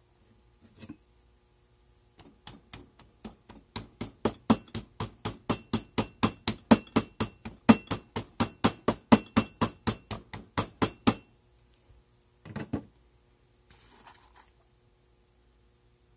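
The end of a steel mandrel pounding Petrobond sand down into a metal casting flask: a fast, even run of sharp knocks, about four a second for some nine seconds, with a faint metallic ring. A couple of softer sounds of sand being pushed by hand follow near the end.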